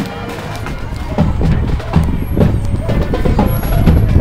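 Street parade sound: people talking over music with drum beats, which get louder about a second in.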